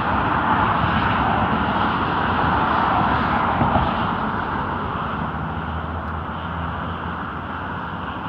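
Road traffic going by, a vehicle's tyre and engine noise that is loudest in the first half and fades away over the last few seconds.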